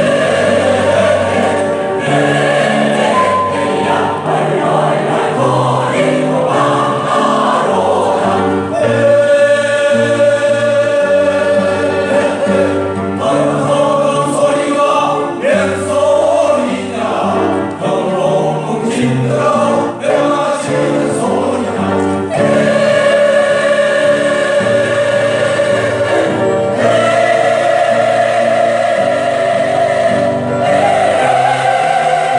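Mixed choir of older men and women singing together, with several voice parts holding long sustained notes.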